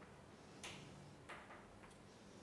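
Near silence broken by three faint, short ticks about half a second apart: chalk tapping and striking a blackboard during writing.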